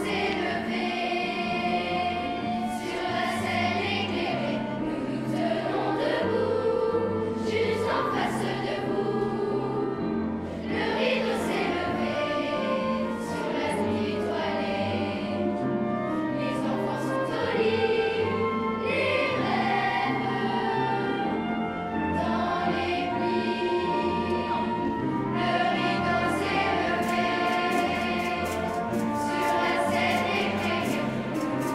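A large children's choir singing, holding long notes that move from pitch to pitch over an instrumental accompaniment with slow, steady bass notes.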